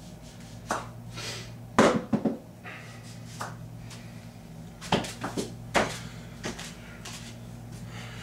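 A man bending a steel bar by hand, making a series of short, sharp sounds: a loud cluster about two seconds in and another about five seconds in, over a steady low hum.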